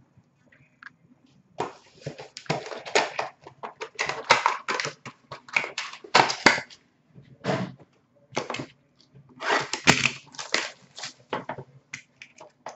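Crinkly plastic wrapping being torn and scrunched by hand, in irregular crackling bursts with short pauses, as a sealed box of trading cards is unwrapped.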